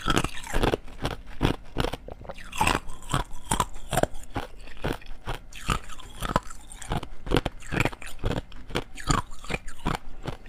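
Thin shells of clear ice crunched and chewed between the teeth, close to a clip-on microphone: a rapid, irregular run of sharp cracks and crunches.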